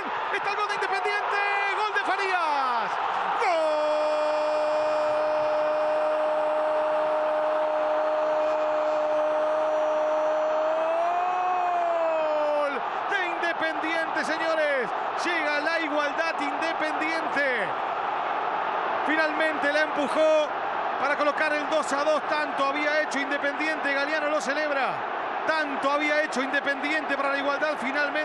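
A television football commentator's long goal cry, one note held for about nine seconds that swells slightly and then falls away, followed by rapid excited shouting. Stadium crowd noise runs underneath.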